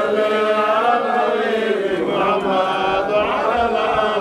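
A man's voice chanting a religious recitation in a slow melody, each phrase drawn out on long held notes.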